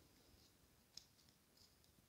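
Near silence with a few faint, sharp clicks of playing-card-sized oracle cards being handled and shuffled in the hands, one slightly louder click about halfway through.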